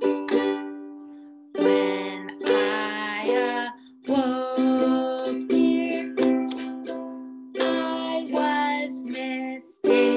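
Ukulele strummed in chords, following a set strum pattern of down and up strokes. Early on one chord is left to ring and fade, then the strumming picks up again and carries on steadily.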